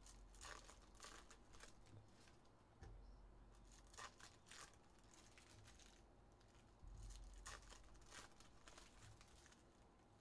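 Faint handling of trading cards and their pack wrappers: short, scattered rustles, flicks and crinkles as cards are shuffled through and set down by hand.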